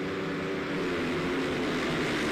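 A pack of single-cylinder flat-track racing motorcycles revving together on the start line, then launching off it, the engine note shifting as the field accelerates.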